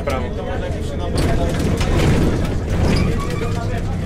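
Cabin noise of a Jelcz 120M city bus on the move: the engine running with road and body noise, growing louder about a second in and easing slightly near the end.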